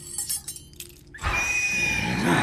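Metal battle claws clicking and scraping on stone, then loud film-score music starts a little over a second in.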